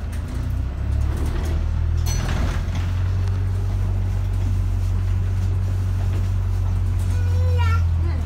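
City bus engine and drivetrain running with a steady low rumble while the bus drives along, heard from inside the passenger cabin, getting louder in the first second. A brief hiss about two seconds in, and a short high-pitched voice near the end.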